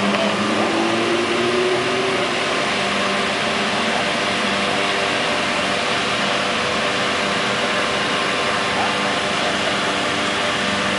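Vehicle engine running steadily as a float chassis drives slowly along the street, with a brief rise in pitch in the first couple of seconds.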